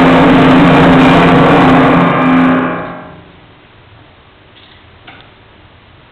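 Timpani and piano playing a loud held chord that stops about two and a half seconds in and dies away within half a second. The hall is then quiet, with a couple of faint clicks.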